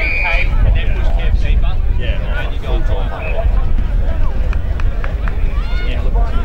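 Football umpire's whistle, one short blast right at the start and a shorter one about three seconds in, among shouting from players and spectators over a steady low rumble.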